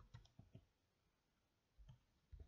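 Near silence broken by a few faint clicks of a computer being operated, a cluster in the first half-second and one more near the end, as the calculator is brought up.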